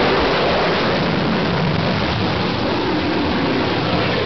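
Jet aircraft engines running on a carrier flight deck: a loud, steady rush of noise.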